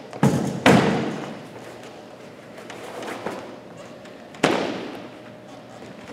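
Thuds on a wooden gym floor as workout equipment and a mat are moved and set down: two heavy ones close together near the start, a faint knock about three seconds in, and a sharp one about four and a half seconds in that echoes in the large hall.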